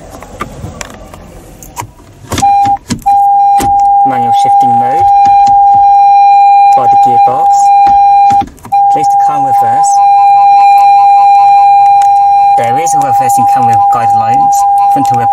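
Automatic gear lever clicking as it is shifted into reverse, then the car's reverse-gear warning beep sounding as one loud steady tone, broken twice briefly.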